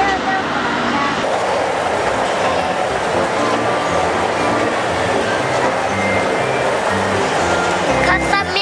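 Music with a regular bass line, over the steady running noise of a children's ride train, which sets in about a second in.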